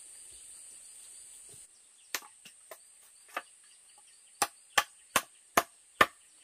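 A large knife chopping into the end of a bamboo section to split it: a few lighter strikes, then four sharp, loud chops about a third of a second apart. A steady high insect drone sits behind.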